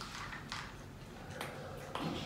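A spoon scraping in a small glass bowl, with about four light clinks against the glass.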